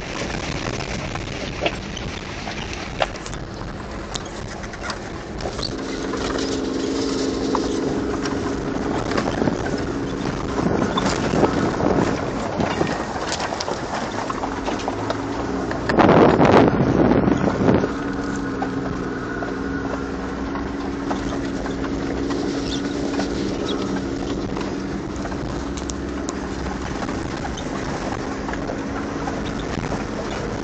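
Engine of a Toyota 4x4 running under load inside the cab while driving a rough dirt mountain track, with scattered knocks and rattles from the bumpy ground. About halfway through comes a loud two-second rush of wind on the microphone.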